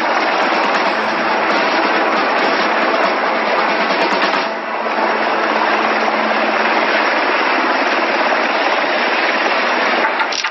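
Helicopter rotor and engine noise, a dense steady chopping that dips briefly about four and a half seconds in.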